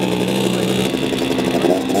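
Small two-stroke moped engine running steadily, its pitch stepping up a little about a second in.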